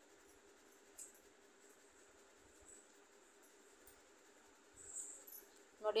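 Faint room tone with a steady low hum, broken by a single short click of a steel spoon against a stainless steel kadai about a second in and a brief scrape of the spoon through the vegetables near the end.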